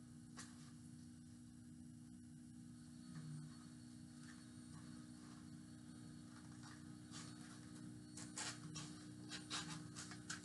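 Scissors cutting through a sheet of printer paper, faint, with short snips and paper rustles that grow louder and more frequent near the end, over a steady low electrical hum.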